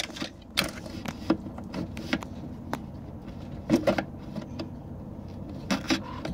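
Scattered clicks and knocks of a Sea-Doo reverse cable and its fittings being handled and drawn out of the plastic housing, over a steady low hum.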